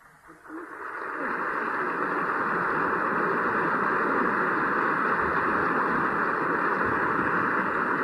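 Theatre audience applauding at the end of a song, swelling over the first second and then holding steady. It sounds dull, with the high end cut off.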